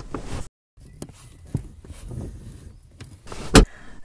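A car's driver seat being adjusted forward: rustling and small knocks from the seat and its rails, then one sharp, loud knock near the end.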